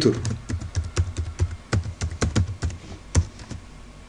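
Typing on a computer keyboard: an irregular run of quick key clicks that thins out near the end.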